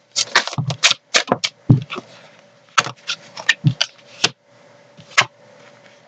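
Tarot cards being handled and shuffled by hand: a quick run of sharp card clicks and snaps in the first second, then scattered single clicks as cards are drawn from the deck.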